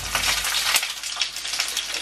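Pepper frying in hot olive oil in a pan: a steady sizzle full of fine crackles.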